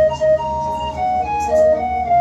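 Two-manual electronic keyboard played with a flute-like organ voice: a melody of short held notes moving up and down over a steady low bass.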